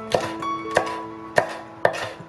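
A chef's knife slicing a green pepper into strips on a wooden cutting board: four sharp knocks of the blade on the board, a little more than half a second apart, over light background music.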